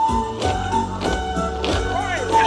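Bamboo poles of a bamboo-pole dance (nhảy sạp) knocking together in a regular beat, about twice a second, over melodic music.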